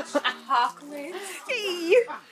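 Women talking and laughing over quiet background music, with one high, drawn-out laugh near the end.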